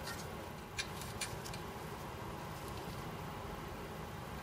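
Quiet room tone with two faint light metallic clicks a little under a second in, as small nuts and washers are handled onto the tuning condenser's mounting studs.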